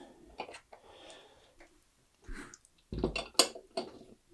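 Light clicks and clatter of hard objects handled on a workbench, then a cluster of louder knocks with a low thump about three seconds in as a metal solder reel stand is set down.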